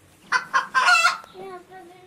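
A young child's high-pitched squealing: a loud burst of shrieks about a third of a second in, then a wavering, sing-song cry.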